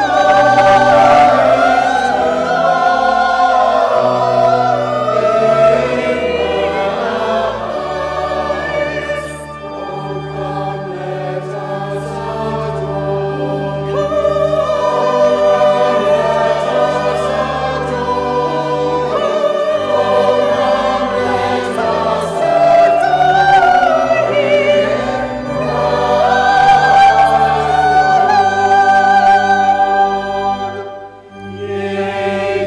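Small mixed choir of men and women singing a Christmas carol in parts.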